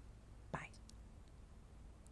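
Near silence: faint steady low rumble, with one short breathy sound about half a second in.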